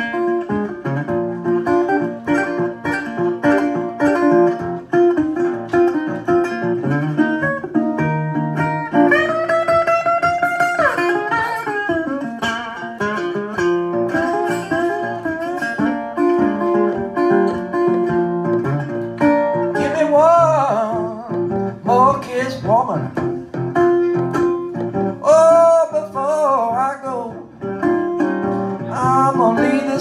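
National resonator guitar played fingerstyle with a glass slide: a slide blues solo over a steady picked bass line. Notes glide upward about ten seconds in, and later in the passage the slid notes waver with slide vibrato.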